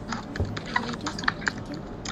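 Irregular small clicks and taps, several a second, like keys being pressed, with a low thump about half a second in.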